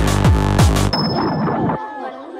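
Electronic dance music: a fast kick drum at about four beats a second with a thin high tone over it, dropping out about halfway through into a break of ringing, clanging metallic sounds; shortly before the end the bass falls away, leaving only the ringing tones.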